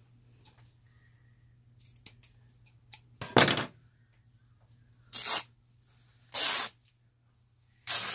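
Fabric being torn by hand into strips: three short rips about a second apart, the first the loudest, after a few faint ticks.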